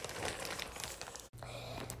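Faint crinkling of a plastic zipper bag of water being handled and pressed flat. It cuts off suddenly a little past halfway, followed by a faint steady low hum.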